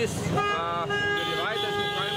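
A vehicle horn sounding one steady, held note that starts about half a second in and lasts well over a second, with a man talking over it.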